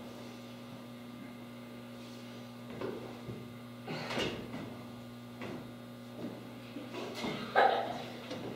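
Scattered brief thumps and scuffs, about half a dozen, over a steady low electrical hum. The loudest comes about four seconds in and another near the end. They are typical of a performer's footsteps and movements on a stage floor.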